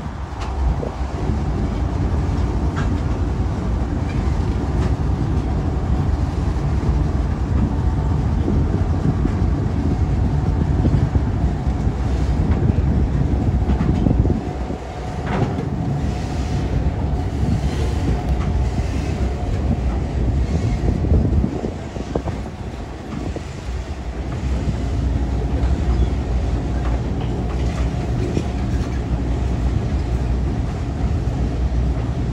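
A freight train led by a GE ES44AC-H diesel locomotive rolls across a low wooden trestle bridge. There is a steady heavy rumble from the locomotives, and the freight cars follow with short clicks of wheels over the rail joints, mostly in the second half.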